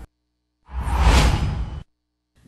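Newscast transition whoosh sound effect: a single swoosh with a deep low end, starting a little over half a second in, lasting just over a second and cutting off sharply.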